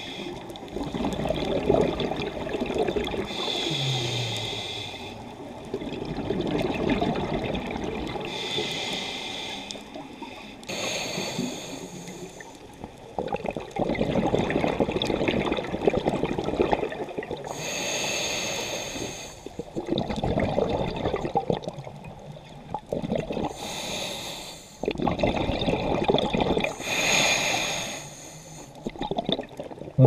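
Scuba diver breathing through a regulator underwater: a short hissing inhale, then a longer bubbling exhale, repeating every few seconds for about six breaths.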